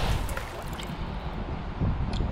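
Low, steady rumble of wind buffeting the microphone, with a few faint soft ticks.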